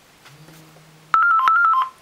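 A phone ringtone for an incoming call: a quick melodic phrase of clear tones that flip between a higher and a lower pitch. It comes in about a second in and lasts under a second.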